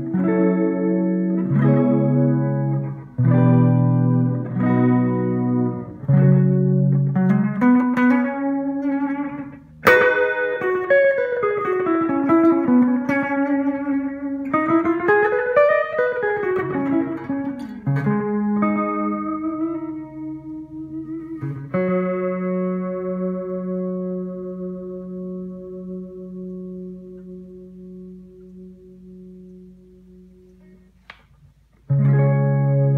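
Electric guitar, a PRS SE Custom, played through a Line 6 M5 stompbox modeler on its Digital Delay with Mod preset into a Carvin Legacy 3 amp, with a short delay time. Chords struck about once a second, then a run of notes that slide down and back up in pitch, then a final chord left ringing and slowly fading with a shimmery modulated delay.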